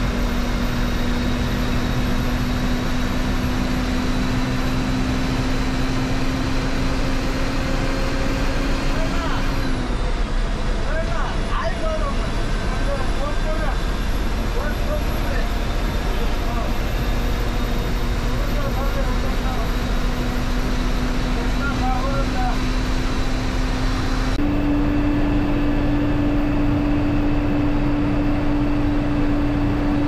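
Ashok Leyland sleeper bus's diesel engine and road noise heard from inside the driver's cabin on the move: a steady drone with a held engine note. The note drops about a third of the way in and sits a little higher near the end.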